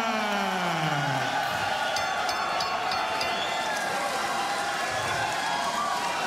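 Ring announcer's long, drawn-out call of the boxer's name, its pitch falling away and ending about a second in, over a cheering arena crowd. The crowd noise carries on steadily, with a short run of sharp clicks about two seconds in.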